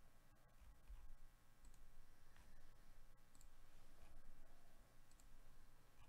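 Faint computer mouse clicks, a few spaced taps, over a low steady hum.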